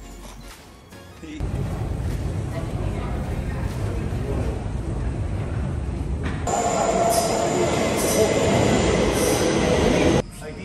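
Stockholm metro train running through an underground station. A loud rumble starts suddenly about a second in, and from about six and a half seconds high steel wheel squeal rides over it. It all cuts off abruptly at the very end.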